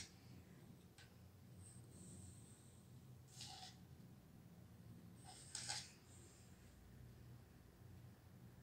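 Near silence: room tone with a steady low hum and two brief soft sounds, one about three and a half seconds in and one about five and a half seconds in.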